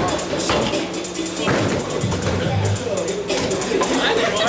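Bowling alley sound: loud background music with a repeating bass beat over a hubbub of voices, with a few sharp knocks.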